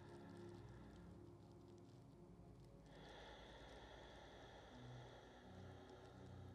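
Faint, soft background music of held, sustained chords, which shift to a new chord about halfway through.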